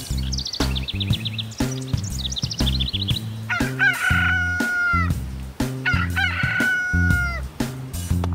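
Two quick runs of high bird twittering, then a rooster crowing twice, each crow about a second and a half long and falling off at the end, over background music with a steady beat.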